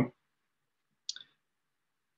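Mostly silence, with a brief vocal noise right at the start, then a faint, high click about a second in.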